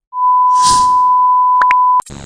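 Loud, steady test-tone beep, the kind used with TV colour bars, held from just after the start to the end. A burst of static hiss runs under it in the first half, and two short blips come near the end.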